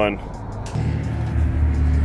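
Low, steady rumble of a motor vehicle's engine running nearby. It comes in under a second in and holds even.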